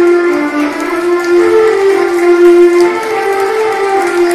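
Electronic keyboard playing a slow melody one note at a time in a sustained, string- or reed-like voice, the held notes gliding smoothly from one to the next.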